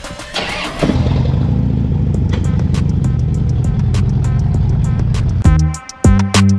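Motorcycle engine starting: a short burst of cranking, then the engine catches about a second in and idles steadily with a low, even rumble. Background music with a beat plays over it and takes over near the end.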